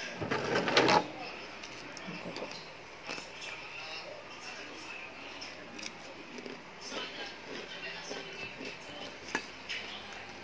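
Eating rice by hand from a plate: a loud scraping rustle in the first second, then soft scattered clicks of fingers and food against the plate, with faint voices in the background.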